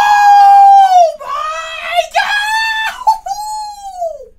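A man's loud, high-pitched excited scream, drawn out in several held cries one after another, the last one falling in pitch as it trails off at the end.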